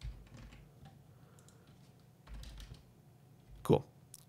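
Computer keyboard typing: a few faint, scattered keystrokes, then a short, louder vocal sound near the end.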